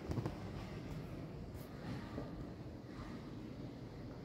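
Steady low background rumble with a brief clatter just after the start.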